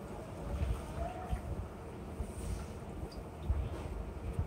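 A wet foam sponge squeezed by hand into a glass bowl, water dripping and trickling out of it, among low bumps and rumble from hands handling the bowl and plastic mat.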